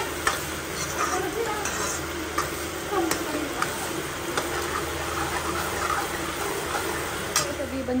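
Diced vegetables sizzling as they fry in oil in a kadhai, stirred with a metal ladle that scrapes and clicks against the pan now and then.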